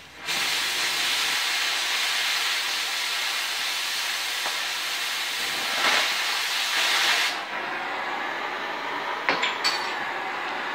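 Oxyacetylene cutting torch hissing steadily as it cuts through a pipe. The hiss eases and dulls about seven seconds in, with a few sharp clicks near the end.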